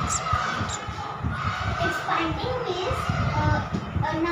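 Speech: a child talking, with a low rumbling noise underneath throughout.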